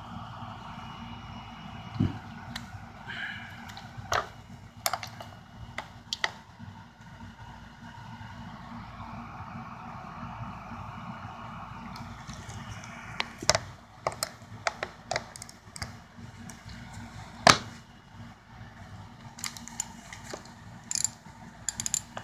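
Chrome combination wrenches clicking and clinking against each other and their rack in a metal toolbox drawer as they are handled. The clicks come scattered and irregular, the loudest about three quarters of the way through, over a steady low hum.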